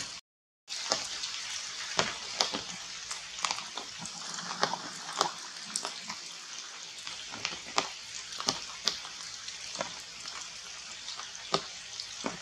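Steady rain on forest foliage, with irregular sharp drips and taps of drops on leaves scattered throughout. The sound cuts out completely for about half a second near the start.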